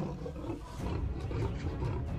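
Low growling from big cats, a lion and tiger squaring off just after a scuffle.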